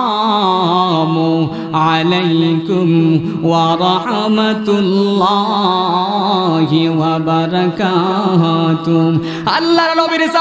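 A man's voice chanting a sermon in a melodic, sung style: long held notes that waver in pitch, in phrases a second or two long.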